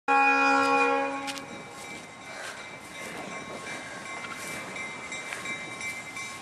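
Freight locomotive's air horn sounding a loud chord of several notes for about a second and a half, then breaking off into the quieter running noise of the approaching train.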